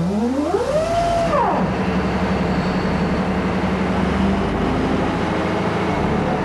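Large off-highway dump truck's diesel engine: a whine rises in pitch for about a second and drops away, then the engine settles into a steady low drone.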